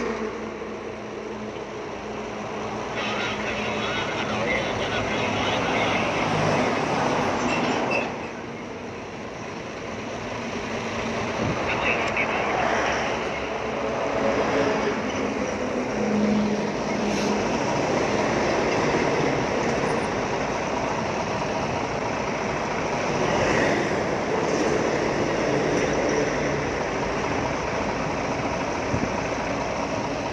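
Road traffic passing, its noise swelling and fading several times, with indistinct voices underneath.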